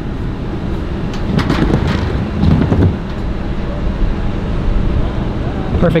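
Scooter wheels rolling down a steep wooden mega ramp, a steady rumble mixed with wind on the microphone.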